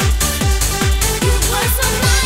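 Uptempo electronic dance music from a bounce and Euro-dance DJ mix, with a steady four-to-the-floor kick drum about twice a second under sustained synth chords.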